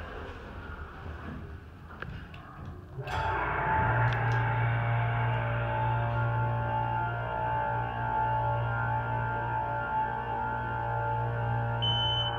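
Hydraulic elevator pump motor starting about three seconds in and running with a steady hum and several held tones as the car rises.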